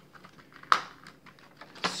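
Small plastic clicks and light rustling as bagged HeroClix figures are handled, with one sharp, louder click about three-quarters of a second in.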